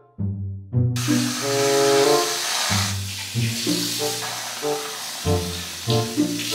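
Background music with a melody, and from about a second in a steady hiss from an aerosol can of Reddi-wip whipped cream being sprayed onto an iced drink.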